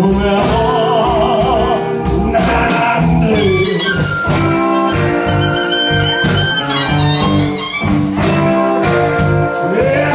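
Live blues band playing a slow blues: electric guitars, bass guitar and drums, with a steady drum beat and sustained, wavering lead notes on top.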